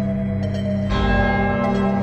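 Ambient background score of sustained tones. About a second in, a bell-like chime with a long ring enters.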